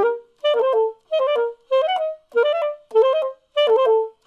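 Alto saxophone playing a fast passage in a rhythmic-variation practice drill: each group of four notes is squeezed into a quick flurry of 32nd notes, then briefly held, with a short break before the next group. About six or seven of these quick note groups come at an even pace, roughly every 0.6 seconds.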